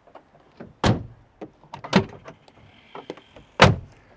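RAM 1500's multifunction tailgate, its side-hinged door swung open and shut by hand: clunks about one and two seconds in, then a loud slam near the end as the door is closed.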